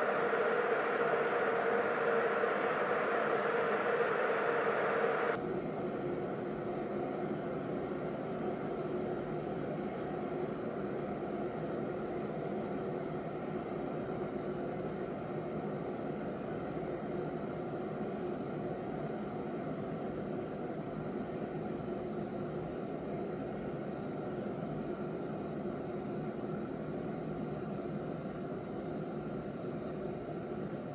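Glass electric kettle heating water toward the boil: a steady hiss of forming bubbles. The sound drops suddenly in level about five seconds in, then runs on steady and quieter.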